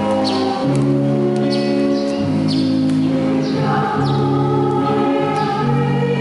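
Church choir singing a hymn in long held notes that move to a new pitch about every second or so.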